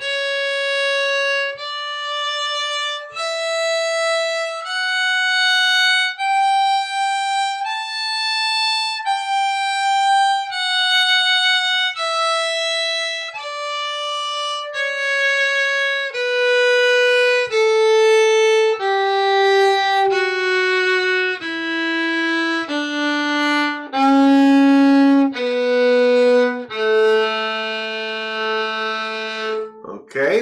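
A fiddle playing a slow D major scale practice over an octave and a half, one long bowed note at a time. It climbs to the high A about eight seconds in, then steps back down and ends on a long low A.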